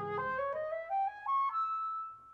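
Concert flute playing a quick rising run of notes that ends on a high held note, with a low piano chord dying away under its first notes.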